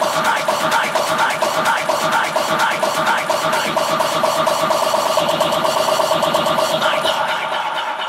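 Techno in a breakdown: fast, even hi-hat-style percussion over a held synth note, with no kick drum or bass. The high end thins out near the end as the section leads back into the drop.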